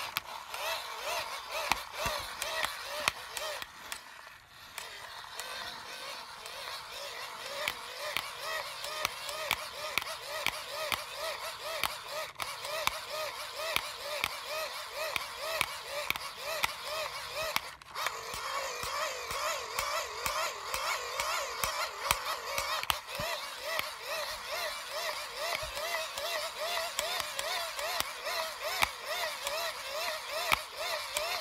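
Hand-crank dynamo of a crank-charged flashlight being wound steadily to charge its battery. It gives a continuous geared whine whose pitch rises and falls with each turn of the handle, over fine rapid gear clicking.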